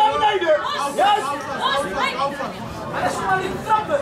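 Several voices talking and calling out over one another in a large hall, the chatter of spectators around the ring.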